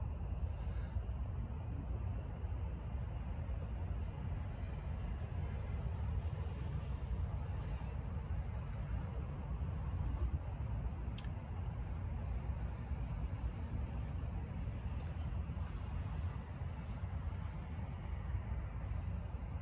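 A steady low rumble of background noise with no clear pitch, broken only by a couple of faint clicks, one about four seconds in and one about eleven seconds in.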